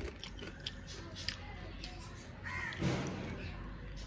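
Small clicks and cracks of crab shell being picked apart with the fingers, with a harsh bird call, a crow-like caw, about two and a half seconds in.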